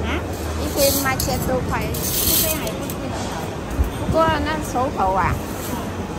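People talking over the general chatter and hum of a busy food court, with a short stretch of clatter about a second or two in.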